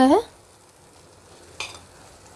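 Faint, steady sizzle of masala and kidney beans cooking in a steel kadhai. About one and a half seconds in comes a short scrape of a spoon pushing boiled potatoes off a plate into the pan.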